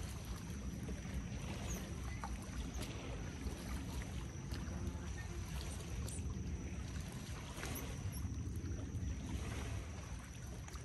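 Steady wind rumbling on the microphone, with small waves lapping at a river shoreline and a few faint clicks.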